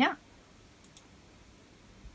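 Computer mouse clicked: two faint, short clicks close together about a second in.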